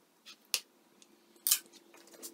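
Two sharp clicks about a second apart, the second louder, from hand work on the aluminium gantry of a DIY CNC machine, with a faint steady hum from about a second in.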